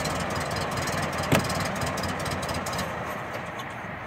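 The 1919 Templar roadster's engine being turned over without catching: a steady rapid mechanical chatter that fades out near the end, with one sharp click about a second and a half in. The car has been sitting and is slow to fire.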